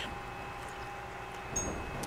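Low wind rumble on the microphone under a faint steady hum, with a small click about one and a half seconds in.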